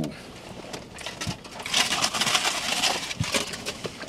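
Close eating noises from a burrito being handled and chewed: a crackly rustle of the wrapper with wet mouth sounds, lasting about a second and a half through the middle, with a few faint clicks around it.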